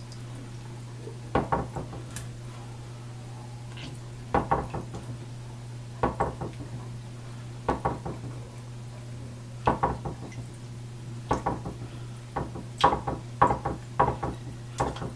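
Telescope mirror being wiped with a cotton ball under soapy water in a sink: clusters of short knocks and clicks, with splashing, roughly every two seconds as each stroke moves the glass against the basin, over a steady low hum.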